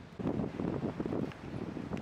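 Wind buffeting the camera microphone outdoors: an uneven, low rumbling gusting.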